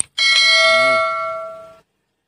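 A quick click, then a notification-bell chime sound effect that rings with several steady tones for about a second and a half and fades out.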